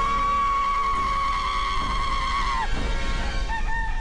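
A man's long, high-pitched scream, held steady with a slight wobble for about two and a half seconds before breaking off, over music with a low rumble.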